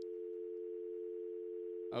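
Telephone dial tone: a steady two-note hum held unbroken, cutting off just before the end.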